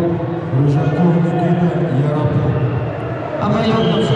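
A man's voice speaking almost without a break.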